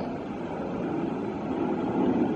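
A car engine running at low speed over steady street noise, with a low steady hum coming up in the second half.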